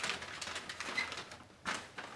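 Paper crinkling and rustling as a folded sheet is handled, then a single knock on a door near the end.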